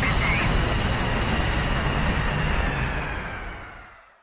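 Jet airliner taking off: steady engine noise with a low rumble, fading away over the last second or so.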